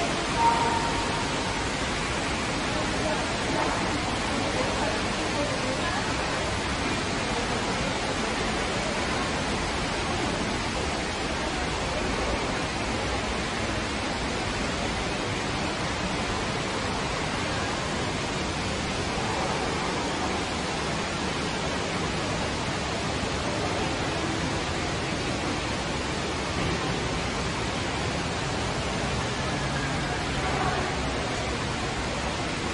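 Steady rushing background noise with a faint murmur of distant voices: indoor shopping-centre ambience.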